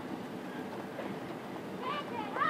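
Stadium ambience: a steady low murmur of the outdoor crowd and field with no band playing, and a short high-pitched call, like a voice, starting near the end.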